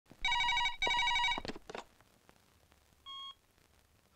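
Cordless telephone ringing with an electronic warbling ring: two bursts of about half a second each. A few knocks follow, then a short beep from the phone about three seconds in, as the call is answered.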